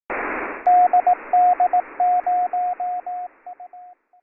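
Morse code: a single steady tone keyed on and off in dashes and dots over radio receiver hiss, the pattern reading dah-dit-dit, dah-dit-dit, five dahs, dit-dit-dah, the call sign DD0UL being sent. The hiss comes in loudest at the very start.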